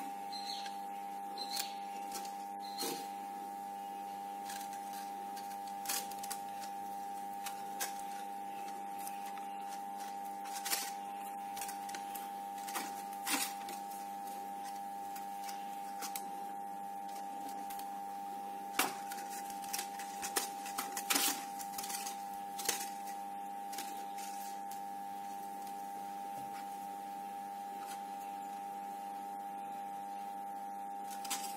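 Soft rustles and scattered light clicks of floral tape and crepe-paper leaves being handled and twisted around a wire stem, over a steady hum.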